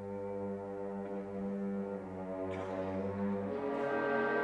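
Opera orchestra holding low, sustained chords with brass prominent, moving to a new chord near the end.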